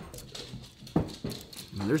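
Thumping and knocking from pets scuffling together nearby, with one sharp, loud thump about a second in.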